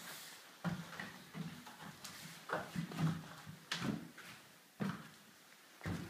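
Irregular knocks and thuds on wooden framing and plywood, about half a dozen spread over a few seconds, as someone climbs up into a wooden loft, with clothing brushing against the microphone.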